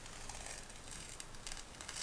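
Faint, sticky crackling and ticking of a black peel-off face mask being slowly pulled away from the skin.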